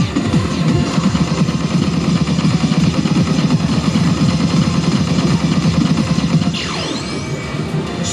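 Electronic music and effects from a Sammy Disc Up pachislot machine over the busy din of a pachislot parlor, with a swooping sound effect near the end.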